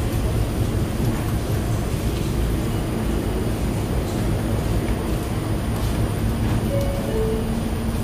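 R179 subway train standing at the platform, its onboard equipment giving a steady low hum and rumble that echoes off the tiled underground station.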